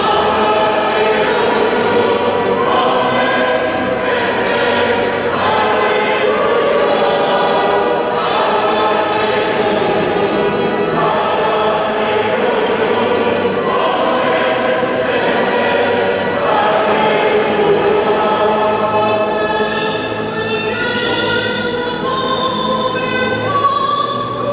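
A liturgical choir singing in slow, held notes, heard across a large cathedral nave.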